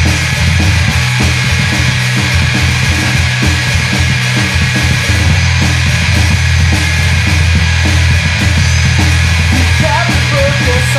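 Loud, dense indie/punk rock music from a full band, playing an instrumental stretch without vocals.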